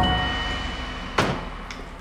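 A wooden sliding door sliding open and hitting its stop with a sharp knock about a second in, followed by a lighter click.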